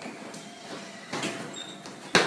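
Quiet footsteps and movement noise as someone walks down a hallway, with a door being handled and pushed open in the second half.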